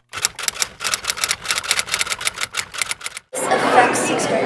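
Rapid typing on keys, a quick irregular run of sharp clicks several times a second for about three seconds. It stops abruptly and gives way to a woman speaking in a room.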